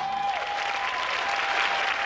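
Theatre audience applauding as a song-and-dance number ends, over the held final notes of the music. The applause runs steadily throughout.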